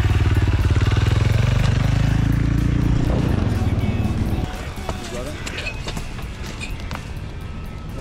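Dirt bike engine running steadily and loudly, then cutting off abruptly about four and a half seconds in. Quieter scuffs and clicks follow.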